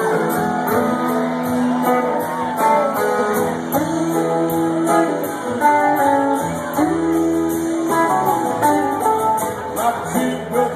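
Live rock band playing: electric guitars holding and changing chords over drums, with a steady cymbal beat, recorded from the audience.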